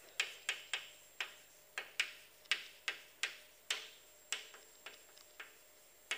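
Chalk writing on a blackboard: a dozen or so sharp chalk taps at an uneven pace of about two or three a second as a line of words is written.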